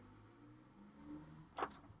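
Quiet room with a faint low hum, which swells slightly about a second in, and one brief soft sound about a second and a half in.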